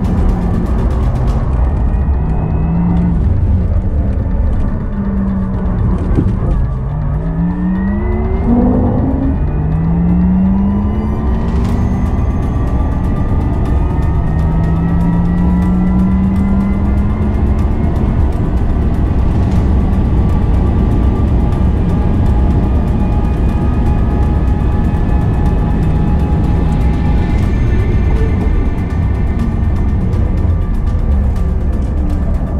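The whine of a Porsche Taycan Turbo S's electric drive heard inside the cabin on a fast lap. It rises in pitch under acceleration and falls under braking several times, over a steady low road and tyre rumble.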